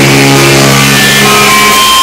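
Live rock band played loud in a small room: an electric guitar chord held and ringing over cymbal wash, with a single high note sustained near the end.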